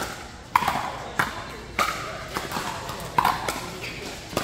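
Pickleball rally: paddles striking the hard plastic ball, a series of sharp pocks spaced about half a second to a second apart, each ringing in a large hard-walled hall.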